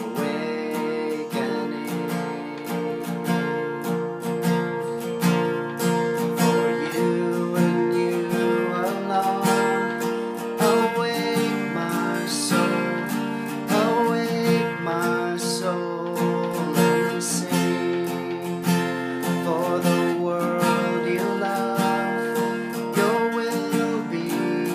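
Steel-string acoustic guitar with a capo, strummed steadily in chords.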